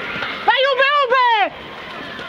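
A person shouting one loud, high-pitched call of about a second, wavering in pitch and broken into about three parts, with other voices faint underneath.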